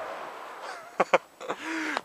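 A man laughing breathily in a few short bursts, ending in a brief voiced laugh, after a fading rush of noise at the start.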